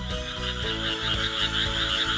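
Toad calling: a steady high-pitched trill over soft background music.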